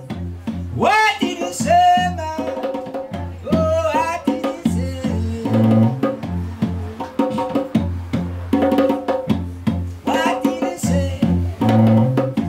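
Live Nyabinghi chant: a man singing with a hand drum struck in a steady rhythm, over a bowed cello playing long low notes.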